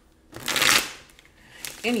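Tarot cards being shuffled close to the microphone: one brief, loud rush of card noise about half a second in.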